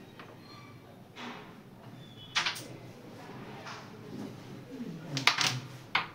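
Carrom striker flicked across the board, giving sharp wooden clacks as it strikes the carrom men: one loud clack about two and a half seconds in and a quick cluster of clacks a little after five seconds. Low voices murmur in the background.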